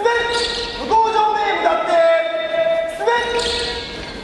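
A voice holding long pitched notes without words, several in turn, each starting with a short upward slide.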